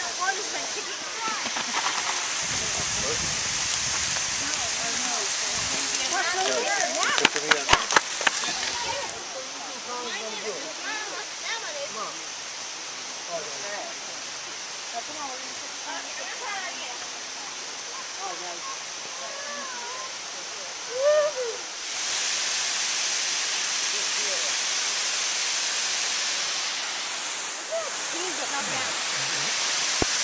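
Steady rushing of a waterfall, with faint children's voices in the background. For several seconds near the start a low wind rumble on the microphone and a few sharp knocks come through, then the water hiss drops back and grows louder again a few seconds before the end.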